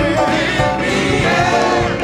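Gospel choir singing, many voices together, with notes held and sliding.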